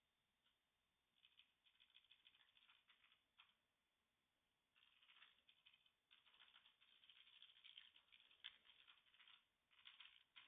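Computer keyboard typing, quiet and rapid, in two runs of keystrokes: a short one from about a second in and a longer one from about five seconds in, with a pause of over a second between them.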